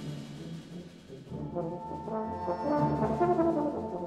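Swiss military wind band playing. Soft low held notes come first; about a second and a half in, brass come in with a gentle stepping melody over held chords, and the music grows louder.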